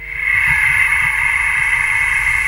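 A steady rushing whoosh sound effect for a TV programme's title card. It swells over the first half-second, then holds.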